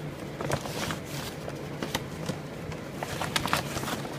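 Handling noise: irregular light taps, clicks and scrapes as a hand and a phone camera brush along a wooden floor joist and the steel trailer frame, over a faint steady low hum.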